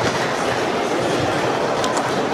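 Steady clattering din of many plastic sport stacking cups being stacked at tables around a sports hall, with a few sharp cup clicks near the end as a doubles stacking run begins.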